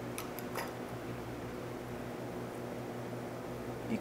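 Electric room fan running steadily with a low hum, with a few faint clicks from hands working hair near the start.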